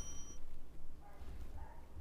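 The tail of a bright bell-like chime, a subscribe-button animation sound effect, rings out over the first half-second. After it comes quiet room tone with low hum and a faint, brief murmur about a second in.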